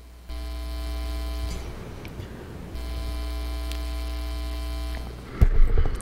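Electrical mains hum from the chamber's microphone and sound system, a steady buzz that switches on abruptly twice, for about a second and then about two seconds, with a drop-out between. Near the end, a few knocks from the podium microphone being handled.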